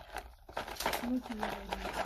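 Cardboard product packs being handled on a shelf, crinkling and rustling, with a short voice sound about a second in.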